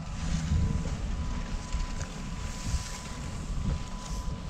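Wind buffeting the microphone, an uneven low rumble, over outdoor street ambience.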